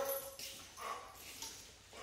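A dog making a few faint, short whines as it moves off.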